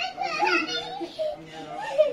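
Young children talking while they play.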